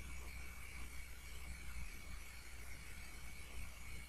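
Quiet room tone: steady hiss and a low electrical hum, with a faint steady high whine.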